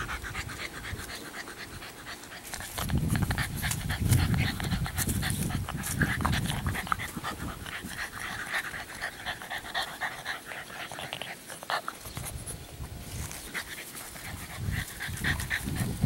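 English bulldog puppy panting close by, with many short clicks and rustles throughout.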